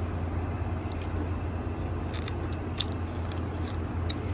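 Steady low background rumble, with a few faint small clicks and a faint thin high tone near the end.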